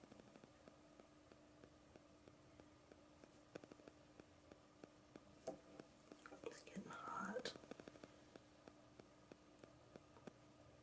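Faint, irregular ticks and crackles of a ball-tip wood-burning pen's hot tip working across wood, over a low steady hum. About six and a half seconds in, a brief soft whispered voice.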